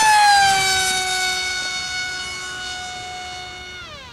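High-pitched whine of an RC foam-board jet's 2400 kv brushless electric motor and 6x5.5 propeller at full power on a 4S pack. The pitch drops during the first second as the plane passes close by, then holds steady and fades as it flies away.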